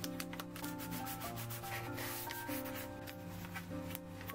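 Fingers rubbing and smoothing paper tape down along the edges of a sheet of watercolor paper, a run of short scratchy strokes, over soft background piano music.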